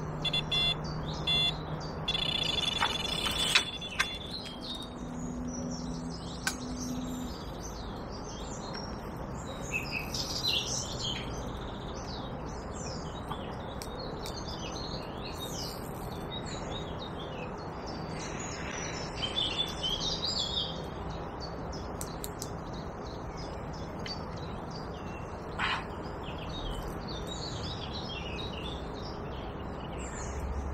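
Small birds singing and chirping, many short calls overlapping all through, with a brief run of rapid ticking about two to four seconds in.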